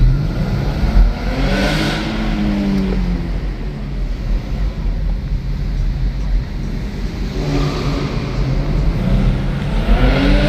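Car engine heard from inside the cabin, pulling up in pitch as the car accelerates over the first few seconds and then easing off. It revs up again near the end.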